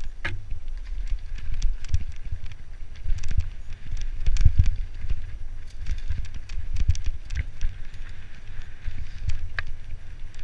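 Mountain bike descending rough dirt singletrack, with frequent sharp clicks and rattles from the bike over the bumps, heard through a heavy wind rumble on the microphone.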